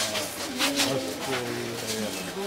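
Several people talking at once, their voices overlapping.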